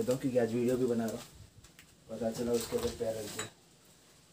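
A man's low voice in two short stretches with no clear words, each about a second long, the second starting about two seconds in.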